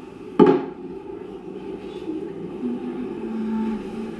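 A single sharp knock about half a second in, with a brief ring: a cup knocking against the top of a coffee table.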